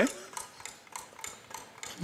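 Game-show countdown clock sound effect ticking steadily as the timer runs down.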